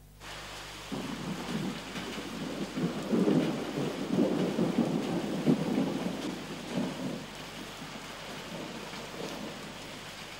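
Heavy rain pouring down, beginning about a second in, with a low rolling rumble of thunder that swells about three seconds in and dies away by about seven seconds.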